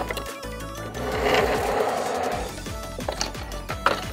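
Background music, over which a die-cast Tomica cement mixer truck is slid into a plastic compartment of a toy car-carrier case: a rolling scrape lasting about a second and a half, then a click near the end as it seats.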